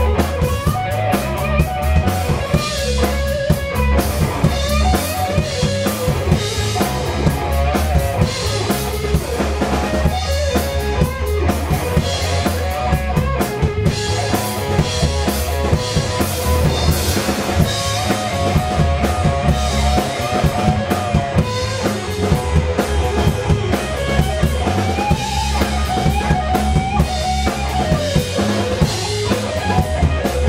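Live blues-rock band in an instrumental break: an electric guitar solo with wavering, bent notes over bass and a full drum kit.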